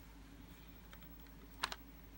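Plastic VHS case clicking as it is gripped and picked up: a couple of faint clicks, then a sharp double click about one and a half seconds in, over a faint steady hum.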